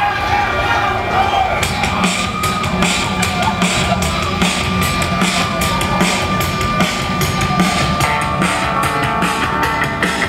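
A live rock band starting a song: guitar and bass first, with the drum kit coming in about a second and a half in, then the full band playing on with a steady beat.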